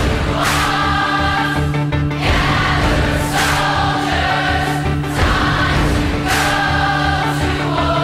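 Background music with a choir singing over steady low sustained notes, with a sharp accent about every one and a half seconds.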